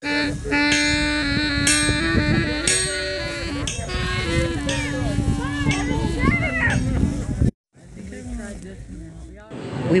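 Music with a held melody line that steps slowly up and down, with people's voices mixed in. It breaks off abruptly about three-quarters of the way through, leaving quieter talk.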